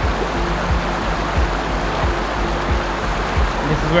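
Shallow river rushing over rocks in a steady wash of water noise, under background music with a soft, steady beat of about one knock every 0.7 seconds.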